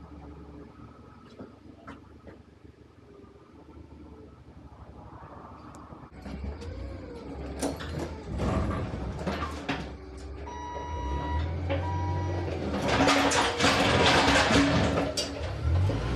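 A manual pallet jack being worked on the wooden floor of a box-truck trailer: rattling, clattering and a low rumble that grow louder after the first few seconds, with some squeaks. There is a short run of electronic beeps just past the middle, and the loudest, densest clatter comes near the end.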